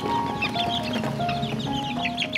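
A group of young chicks peeping in many short, high calls, over background music with a melody of held notes.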